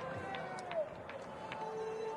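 Faint basketball arena ambience: a low crowd murmur with distant voices and a few light knocks.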